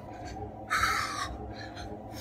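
A man's single heavy, breathy exhale of about half a second, a huff of breath during a cardio workout.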